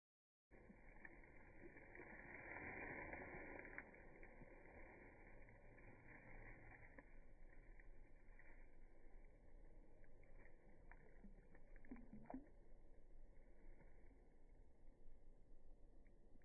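Near silence: a faint steady hiss, with a few faint ticks in the middle.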